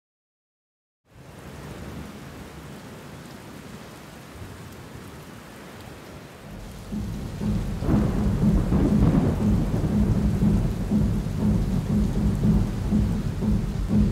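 About a second of silence, then a steady rain-like hiss. From about six seconds in, a deep thunder-like rumble builds and stays loud.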